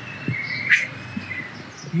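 A bird calling in the background: a thin high whistled note with a short, sharper chirp just under a second in.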